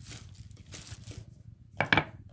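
Wooden rolling pin rolling over dough on a wooden board, a soft rubbing sound, followed near the end by one sharp wooden knock as the pin meets the board.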